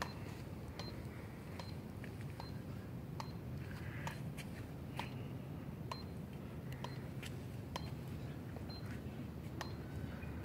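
Electronic push-up counter giving a short high beep with each repetition, about one beep every 0.8 s, over faint outdoor background noise.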